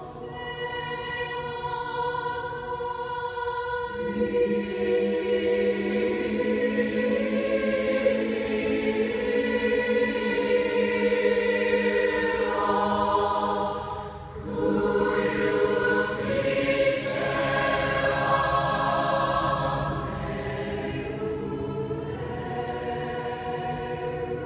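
High school choir singing sustained chords in a church. The sound swells louder about four seconds in and drops briefly between phrases near the middle before the singing resumes.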